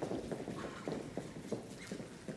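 Dancers' pointe shoes knocking on the studio dance floor as they walk into place: irregular hard clops that grow fainter toward the end.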